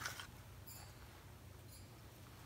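Faint handling noises, a soft click followed by a few light ticks, as a small plastic paint cup and stir stick are handled, over low room hum.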